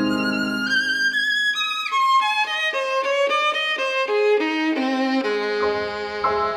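Violin playing an unaccompanied passage with vibrato: it climbs to high held notes, then runs down in a string of quick notes. The piano comes back in with low notes near the end.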